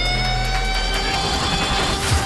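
Dramatic background score: a held synth tone over a low drone, drifting slightly down in pitch after the beat drops out.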